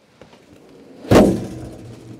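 The floor trap door of a Pilatus PC-6 Porter swings shut and closes with one loud metallic thud about a second in. The thud rings briefly as it dies away.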